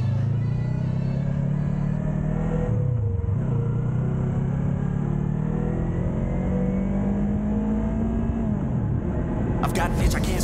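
Yamaha YZF-R3's 321 cc parallel-twin engine pulling away from a stop, its pitch rising, dropping at an upshift about three seconds in, then climbing steadily again before falling off at another shift near the end.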